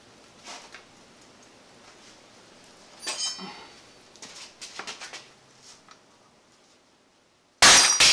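Homemade lever-operated hand punch press being worked, with a few small metallic clinks and knocks as the lever is pulled. Near the end comes a single loud, sharp crack with a metallic ring as the punch shears through 16-gauge sheet metal and bottoms out; it took great force to punch.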